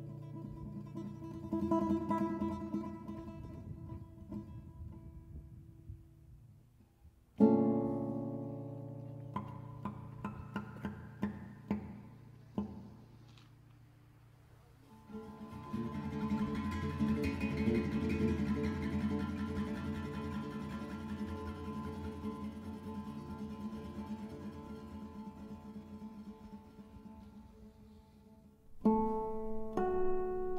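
Background music of solo acoustic guitar playing a slow prelude: ringing chords and plucked notes, a strong chord about seven seconds in, a brief near pause around the middle, then a longer flowing passage and a fresh loud chord near the end.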